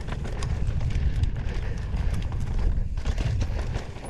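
Mountain bike riding fast down a rough dry dirt trail: tyres rolling over dirt and stones with a steady low rumble, and frequent clicks and rattles from the bike jolting over bumps.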